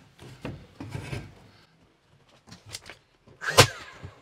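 A cut wooden board being worked into place between wooden framing studs: wood scraping and rubbing on wood with small knocks, then one sharp knock near the end.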